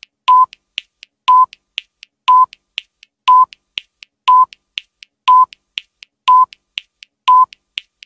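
Countdown sound effect: a short electronic beep of one steady pitch once a second, with two faint ticks between each beep.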